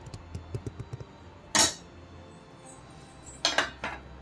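Stainless steel ladle and bowl clinking as gravy is served: a few light taps, then a short sharp clink about one and a half seconds in, the loudest sound. Near the end comes a longer clatter as the steel bowl is set down on a steel plate.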